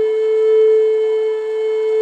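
Solo flute holding one long, steady note, then moving up to a higher note at the very end.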